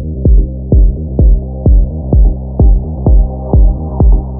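Progressive psytrance: a four-on-the-floor kick drum about twice a second with a rolling bassline between the kicks. The mix is muffled, with the treble filtered off and the filter slowly opening.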